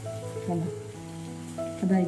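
A ney pathal deep-frying in hot oil in an aluminium kadai, the oil sizzling around the puffing bread. Background music with steady held notes plays over it.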